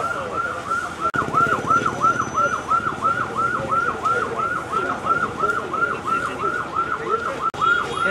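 Electronic vehicle siren in a fast yelp, repeating about three to four times a second, with a vehicle engine running underneath.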